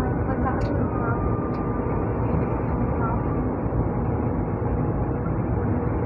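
Steady running noise inside a moving MRT-3 train car: a dense rumble of wheels and motors with faint steady tones above it, and a few small clicks in the first second or two.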